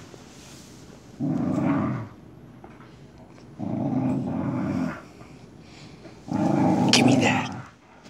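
A dog growling in play while tugging on a rope toy: three rough, low growls of about a second each, spaced a couple of seconds apart.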